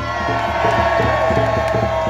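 A rally crowd cheering, with one loud, steady note held over the cheers that stops just after the end.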